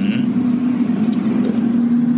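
Steady low hum of a moving car, heard from inside the cabin.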